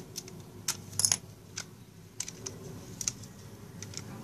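Small metal screwdriver working a screw in a plastic toy sword's panel: about ten irregular sharp metal-on-plastic clicks, the loudest a quick double click about a second in.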